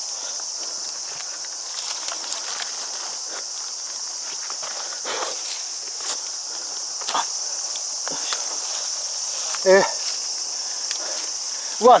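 Scrambling up a steep wooded slope: leaves and twigs rustle and crackle and branches scrape as the climber grips saplings and finds footholds. Under it runs a steady, high-pitched drone of insects. A short effortful grunt comes near the end.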